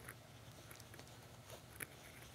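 Near silence: room tone, with one faint brief tick near the end.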